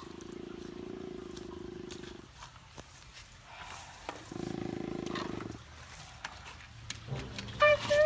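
A low, muffled growling roar, heard twice: a long one at the start and a shorter one about four seconds in.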